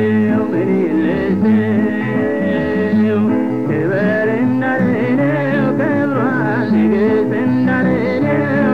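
Ethiopian gospel song (mezmur): a voice sings a wavering, ornamented melody over steady instrumental backing, the singing line growing stronger about four seconds in.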